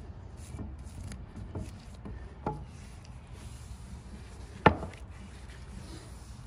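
A gloved hand rubbing oil over a pine-tarred wooden tool handle, a soft rubbing with a few light clicks. There is a single sharp knock just before the five-second mark.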